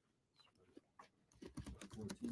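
Near silence, then from about one and a half seconds in a quick, irregular run of key clicks: typing on a computer keyboard.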